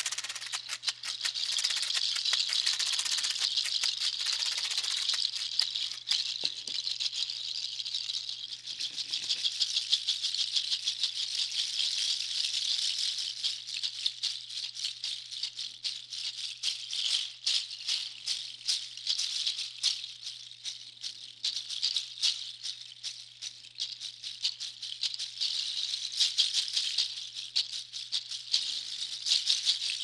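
Solo shaker playing. First a long stick-shaped shaker is swept side to side, giving a steady seed-like hiss. From about halfway through, two bunched rattles of nutshells and goat hooves are shaken together, with dense, irregular clacking.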